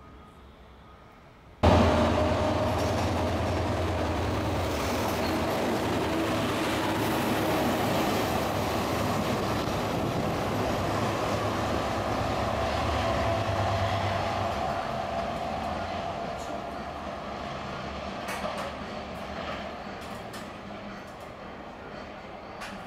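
MÁV M40 diesel locomotive running close by, a steady low-pitched engine drone that starts abruptly about two seconds in. The drone eases off after about fourteen seconds and slowly grows quieter.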